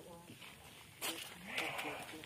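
Long-tailed macaques calling, with a short harsh sound about a second in, mixed with a person's voice.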